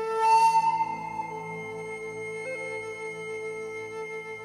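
Background music: a breathy flute holding long, slowly gliding notes over a low sustained drone, with a strong breathy accent about half a second in.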